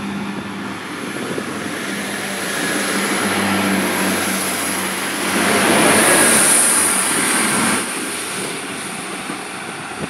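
Irish Rail 22000 Class diesel railcar running with a steady engine hum. The noise swells as the train passes close by, loudest about six to seven and a half seconds in, then drops off sharply.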